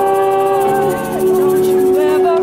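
Live acoustic folk band: a woman's voice holds long sung notes over acoustic guitar and upright bass.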